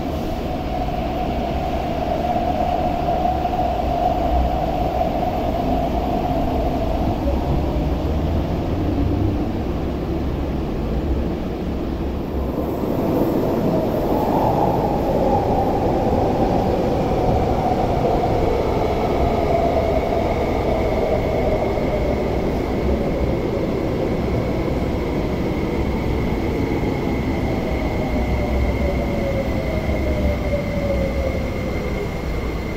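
MTR Tuen Ma Line electric train running on the rails with a steady low rumble and a traction-motor whine. The whine rises briefly about halfway through and then falls slowly in pitch, with a thin higher tone held over the second half.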